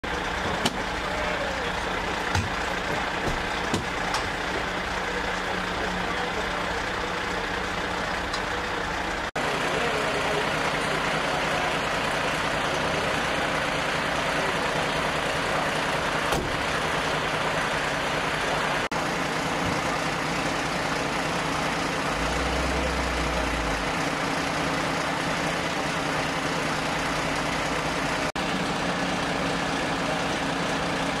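Fire engine's diesel engine idling steadily, a constant low running noise that drops out briefly three times.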